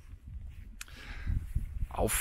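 Wind buffeting the microphone, an uneven low rumble, with one short click about a second in.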